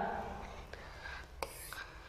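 A pause in a woman's lecture: low room noise with faint breathy, whisper-like sounds from her, a soft hiss about one and a half seconds in.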